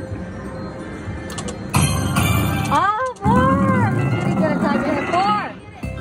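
Video slot machine playing its bonus-round music and win sound effects. There is a sudden hit about two seconds in, and gliding tones that rise and fall in the second half.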